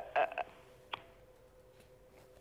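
A caller's hesitant "uh" over a telephone line, then a pause with a faint steady hum on the line and a single click about a second in.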